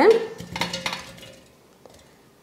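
Watermelon chunks tipped from a steel bowl into a stainless-steel mixer-grinder jar: metal clinking and clattering of bowl against jar as the pieces drop in, dying away after about a second.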